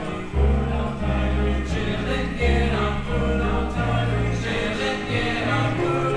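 Gospel-style stage musical number: a choir singing over accompaniment, with a strong bass line that comes in about half a second in.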